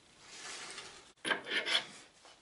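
Rough scraping and rubbing noises, as of wood being handled. The sound breaks off suddenly just past halfway, then comes back louder with several sharp scrapes.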